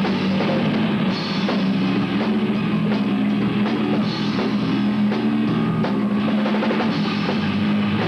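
A rock band playing live and loud: drum kit hits over electric guitar and bass, with no break in the music.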